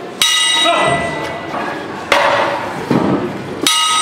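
Boxing ring bell struck twice, about three and a half seconds apart, each strike ringing on with several high tones that fade, marking a round break. Between the strikes there are voices in the hall and a loud noisy burst about two seconds in.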